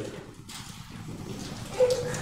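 Pause in a man's preaching: his voice trails off at the start, then low room noise in a church hall, and a short sound from his voice near the end just before he speaks again.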